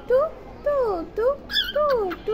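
Cockatiel whistling a quick string of short notes, each swooping up or down in pitch.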